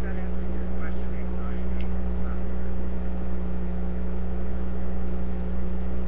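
Steady electrical mains hum with a constant hiss in the background of the microphone line.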